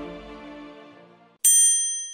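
The tail of the intro music fading out, then, about one and a half seconds in, a single bright bell-like ding that rings on and dies away.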